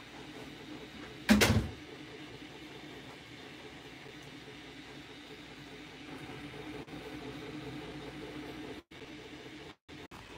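A single dull thump about a second in, over a faint steady room hum; the audio cuts out briefly twice near the end.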